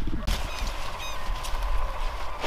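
Outdoor background of low wind rumble on the microphone, with a short chirping call about a second in.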